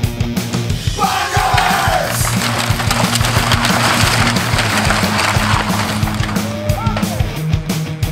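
Heavy rock music with distorted electric guitar over a steady bass line, getting denser and louder in the middle.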